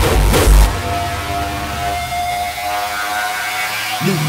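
Hardcore electronic dance music: the pounding kick drum stops about half a second in, leaving a breakdown of a held synth tone over a noisy wash, and the beat starts again near the end.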